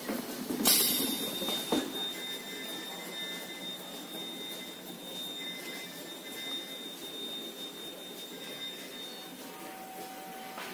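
Spiral paper-tube making machine running: a steady high-pitched whine over a continuous mechanical hum. Near the start there is a short hissing burst and a sharp click.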